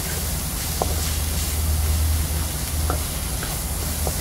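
Onion, tomato and shrimp sizzling in a hot wok as they are stir-fried with a wooden spatula, with a couple of light scrapes about a second in and near three seconds. A steady low rumble runs underneath.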